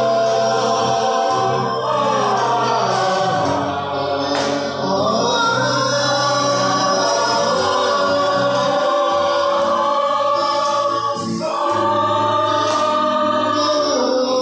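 Amateur group of men and women singing a song together, a man leading into a handheld microphone while the others join in.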